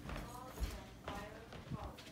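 Footsteps as a person walks across a floor, a few soft thuds, with a voice or humming faintly over them.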